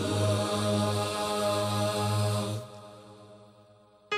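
Layered, multi-tracked a cappella vocal harmonies holding one sustained chord, which fades away about two-thirds of the way through.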